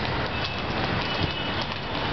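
Quick, irregular light footfalls of trainers tapping on stone paving as a man steps through an agility ladder, over a steady rushing background noise.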